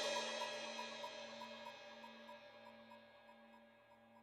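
The last chord of a progressive rock song ringing out and fading steadily: a cymbal wash and sustained keyboard-like tones die away, with a faint pulsing in the held notes.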